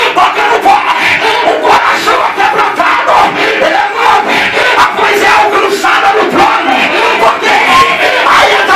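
Loud fervent prayer: a man shouting into a microphone over a church PA, with many voices praying aloud at once and no pauses.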